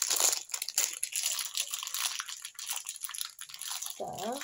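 Crinkling and rustling of packaging being handled, a quick irregular run of crackles.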